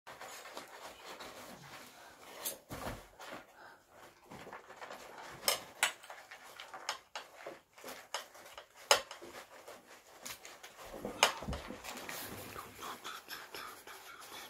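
A dog rummaging and eating with its head inside a cardboard box packed with paper. Paper and cardboard rustle and crinkle irregularly throughout, with a handful of sharp knocks and snaps against the box.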